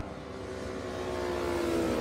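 A racing motorcycle's engine running at speed and drawing nearer, growing steadily louder while its pitch eases down slightly.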